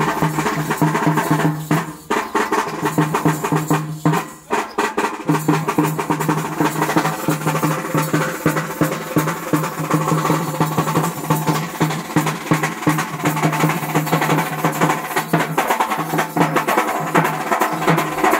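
Live folk band music: fast, dense stick drumming on shoulder-slung barrel drums over a sustained droning pitched tone, with short breaks in the drumming about 2 and 4 seconds in.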